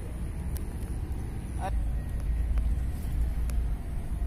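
A steady low outdoor rumble, growing louder a little before halfway, with one brief chirp just before it swells.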